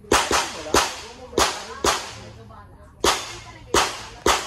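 Handgun shots during practical shooting: seven sharp cracks at uneven intervals, some in quick pairs, each dying away briefly.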